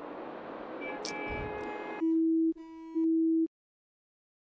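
Hissing, noisy phone line, then about two seconds in a telephone call-ended tone: two steady beeps, the sign that the breaking-up call has dropped. The sound cuts off suddenly after the second beep.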